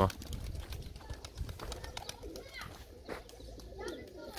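Faint pigeon calls over a quiet outdoor background, with a few short, faint calls in the second half.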